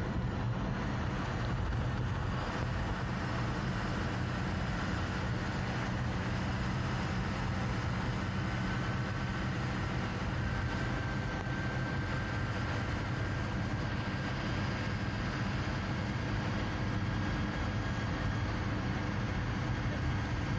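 Ashok Leyland truck's diesel engine running steadily at cruising speed, heard from the moving vehicle as a constant low drone mixed with road and wind noise.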